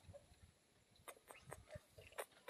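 Near silence, with a few faint short clicks in the second half.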